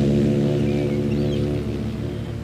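A ship's horn sounds one long, low blast that starts suddenly and slowly fades.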